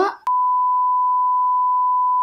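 Censor bleep: one steady, single-pitched beep that cuts in with a click about a quarter second in and blanks out the words being spoken.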